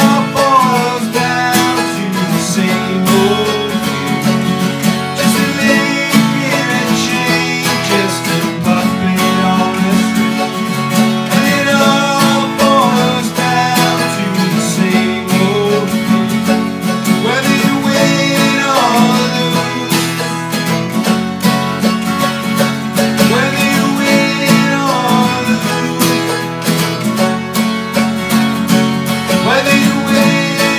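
Two acoustic guitars and a mandolin playing together in an unamplified room, steady chords with a plucked melody over them.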